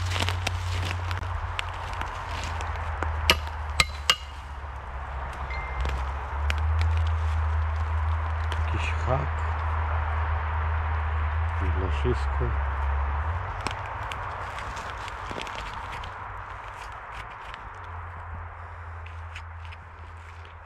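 Digging in leaf-littered forest soil with a spade, with two sharp knocks about three and four seconds in, then a clod of earth being crumbled and searched by hand with a pinpointer, over a steady low rumble.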